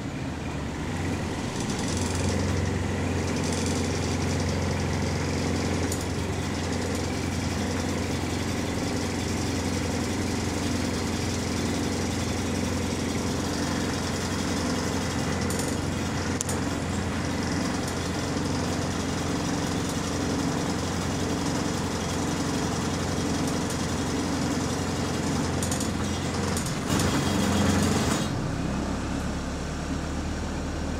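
Engine of a Go-Ahead London single-deck bus (WS116), heard from the passenger cabin, running with a steady hum under rattles of the bus body. Near the end it grows louder for a moment, then the sound settles to a different, quieter engine note.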